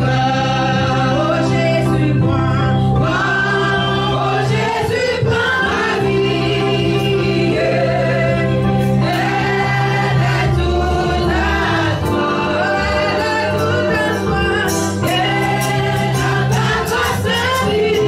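Gospel praise singing in a church: a lead singer and a group of singers on microphones sing together over a steady bass and drums, with the bass note changing every few seconds.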